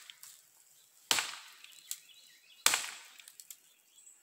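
Polypropylene Cold Steel Walkabout walking cane's head whacking a tree trunk twice, about a second and a half apart, each a sharp hit that dies away quickly.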